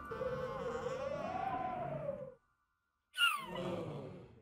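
Cartoon sound effects: a wavering, eerie whistle like wind that rises and falls for about two seconds and stops abruptly. After a short silence, a sharp falling squeal-like sound comes about three seconds in.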